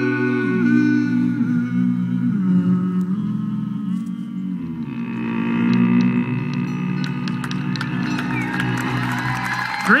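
A bluegrass vocal group and band hold the final chord of a song, with a deep bass voice sustaining the low note under the harmony. From about halfway through, audience applause and cheering rise under the held chord.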